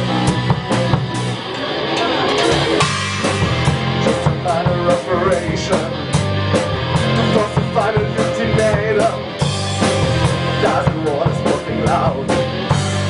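Rock band recording: electric guitar, bass and a drum kit playing a steady beat.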